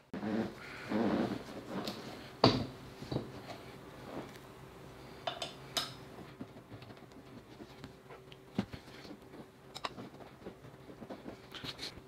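Hands working on a gaming chair's backrest and its bracket screws: rustling handling noise, one sharp knock a couple of seconds in, then scattered light metal clicks as bolts are threaded in by hand.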